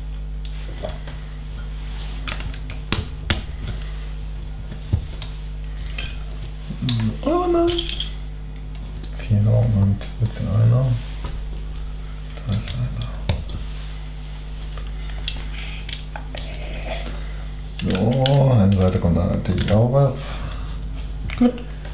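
Loose plastic LEGO bricks clicking and clattering as hands rummage through a pile of pieces and press bricks onto a build, with scattered sharp clicks throughout.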